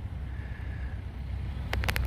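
Steady low outdoor rumble with no clear single source, then a quick series of sharp clicks near the end.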